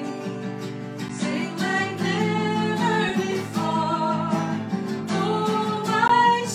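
Acoustic guitar strummed as accompaniment to a worship song, with a woman singing the melody over it.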